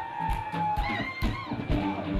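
A live band playing on a steady drum beat, with a long held high note that fades out about halfway through.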